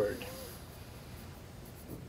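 A voice trails off at the start, then a pen writing on paper, faint over quiet room tone.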